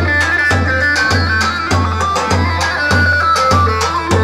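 Kurdish halay dance music played live by a saz band over loudspeakers: a high melody moving step by step over a steady bass drum beat, just under two beats a second.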